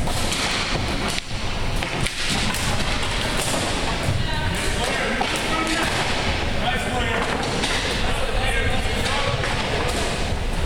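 A floor hockey game on a hardwood gym floor: thuds and knocks of sticks and ball, most plainly in the first couple of seconds, with players' voices echoing in the hall.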